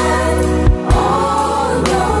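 Gospel song: a choir of mixed voices singing over a band backing with a steady bass line and drum beats. The music dips briefly just under a second in, between two low drum hits.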